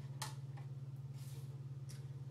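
Low steady hum with a rapid, even pulse, and a brief soft rustle about a quarter of a second in as fingers scoop deep conditioner from the jar.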